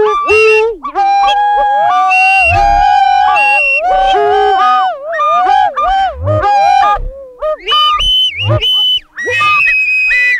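Electronic synthesizer music: several pitched synth tones that hold, step and slide between notes, with a few short low thuds underneath.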